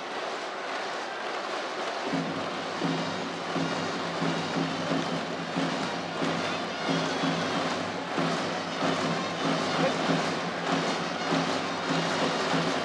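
Baseball stadium crowd noise, joined about two seconds in by a cheering section's rhythmic band music and chanting with a regular beat.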